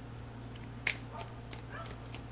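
Tarot cards being shuffled by hand: a few soft, sharp card clicks, the loudest about a second in, over a steady low hum.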